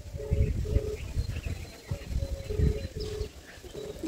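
Phone ringback tone through the phone's loudspeaker: a low double beep, ring-ring, heard twice, while the call goes unanswered.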